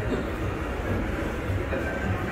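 Steady low rumble and hubbub of a shopping mall's indoor ambience.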